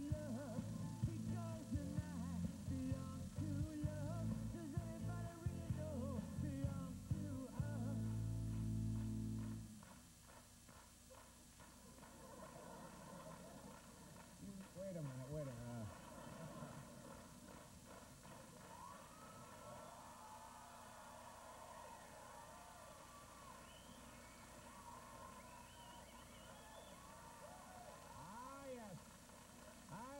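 A house band plays an upbeat rock tune with a steady beat, then cuts off suddenly about ten seconds in. For the rest of the time there are only faint, indistinct voices.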